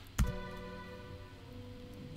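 A sharp click about a quarter second in as a paused song video resumes. Then one sustained accompaniment chord rings on and slowly fades, before the singing comes back in.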